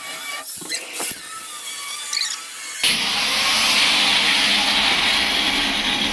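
Angle grinder cutting through a sheet-metal door panel. It starts suddenly about three seconds in as a loud, harsh, steady screech. Before that there are only a few quieter clicks and knocks.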